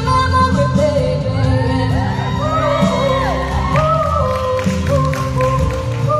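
A young woman's amplified solo voice singing a pop ballad over musical accompaniment, echoing in a large gymnasium hall. Her voice bends through runs and held notes.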